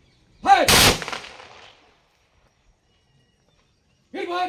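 A shouted drill command, then at once a ceremonial volley of rifle shots fired into the air by a police guard of honour, one loud crack with its echo dying away over about a second.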